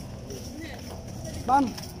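Faint background din of a busy street market, with distant voices, then a man's voice calling "Ma'am" near the end.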